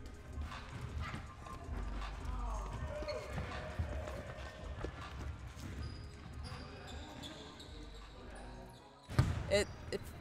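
Indistinct voices and footsteps of a group of basketball players jogging through an arena tunnel, with a burst of louder knocks about nine seconds in.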